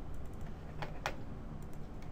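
Two quick clicks at a computer, close together about a second in, over a steady low hum.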